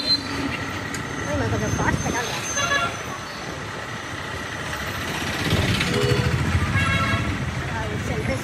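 Street traffic at slow speed: engines running close by, with a vehicle horn tooting briefly twice, about two and a half seconds in and again near seven seconds, over the voices of people in the street.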